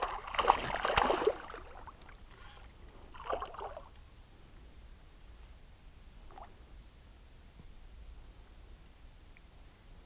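A pike striking a topwater lure at the surface: a splash of water about a second and a half long, followed by a few fainter, short water sounds.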